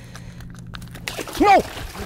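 A redfish (red drum) thrashing free of a hand and splashing in shallow water, starting about a second in, with a man shouting "No!" as it escapes.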